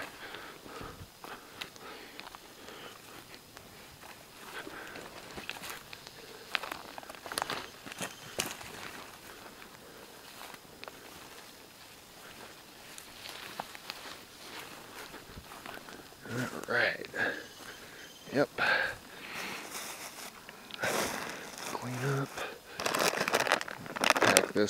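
Footsteps pushing through dense undergrowth, with leaves rustling and twigs snapping in scattered small cracks. In the last few seconds a plastic food pouch crinkles as it is picked up and handled, with some muttered voice.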